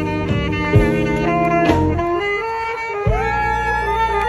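Saxophone playing over a jazz backing track of bass and held chords, with a long note that scoops up and holds near the end.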